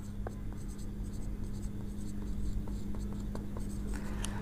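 A marker pen writing on a whiteboard: soft scratching strokes and small ticks as a word is written out, over a steady low hum.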